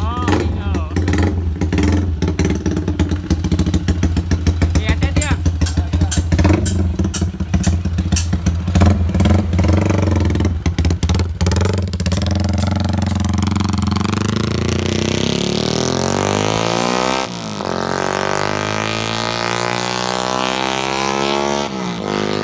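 Yamaha underbone motorcycle engine with an aftermarket exhaust, running with a steady low drone and crackling sharply for the first half. It then pulls away, its pitch rising through the gears with a gear change partway along as the bike rides off.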